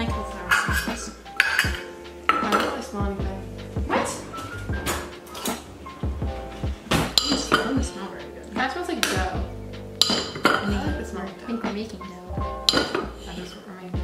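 Kitchen utensils clinking and knocking against a mixing bowl in a string of irregular sharp clinks, over background music.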